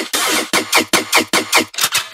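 Dubstep/hardstyle track in a build-up: a chopped, stuttering synth sound repeated in short hits that come faster and faster, with the deep bass dropped out.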